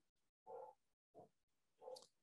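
Near silence, broken by three faint, short sounds from a man's voice in a pause between sentences.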